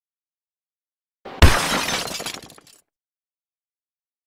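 A single crash sound effect: a sharp impact about a second and a half in, followed by a noisy, glass-like crash that dies away about a second later.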